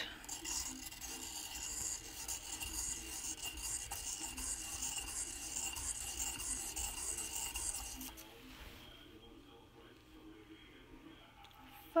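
Pencil lead rasping against the abrasive surface of a Tru-Point pencil pointer as its top is turned round and round, sharpening the lead. The steady scratchy grinding stops about eight seconds in.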